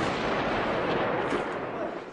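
Heavy gunfire from armed clashes: a dense, continuous din with a few sharper cracks, fading near the end.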